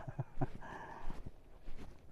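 Footsteps on a stony dirt trail, a few irregular crunching steps, with a short breathy sound about half a second in.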